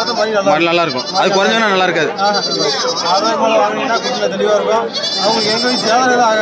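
Goats bleating now and then among a pen of goats, over a man talking.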